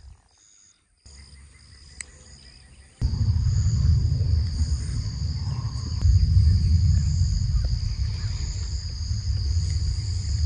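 Outdoor field ambience: after a near-silent first second, a heavy low rumble of wind on the microphone sets in about three seconds in and runs on. Over it sits a steady high-pitched chirring of insects.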